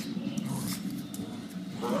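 Small dogs growling at each other in rough play, a steady low growl with a few light clicks over it.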